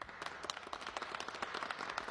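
Applause: many hands clapping quickly and steadily, starting right after the closing words of the show.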